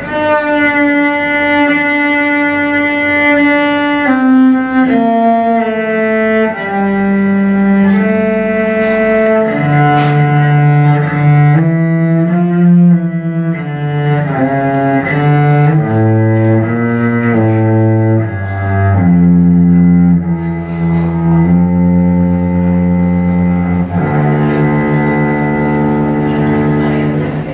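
Solo cello bowed live, playing a slow melody of long held notes, each lasting one to two seconds. The line steps downward to its lowest notes past the middle, then climbs again.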